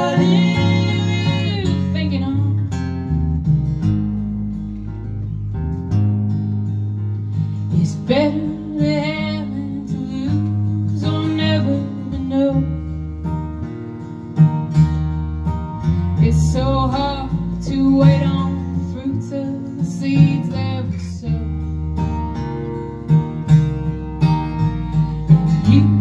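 Live acoustic guitar strumming with electric bass underneath, in an instrumental break of a folk song. A held sung note fades out about two seconds in, and the next sung line starts at the very end.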